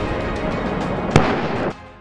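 Tank main gun firing: the rolling rumble of a shot dies away, and a second sharp report comes about a second in. Background music plays underneath, and the sound drops off suddenly near the end.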